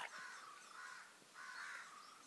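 A bird calling faintly twice, each call about half a second long.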